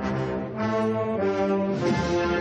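Brass band playing a slow processional march: low, sustained brass chords that shift to new notes about three times.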